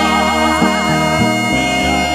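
Instrumental gospel praise-chorus music: a bass line stepping between notes under sustained chords, with a lead melody wavering in wide vibrato in the first second.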